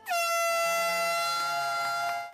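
Air horn blowing one long, steady blast to start a running race.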